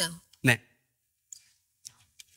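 A single short spoken "No", followed by quiet with two faint clicks.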